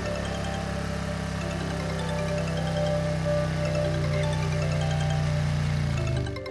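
Tense background score with held notes over a steady low drone that swells slightly, cutting off abruptly at the end.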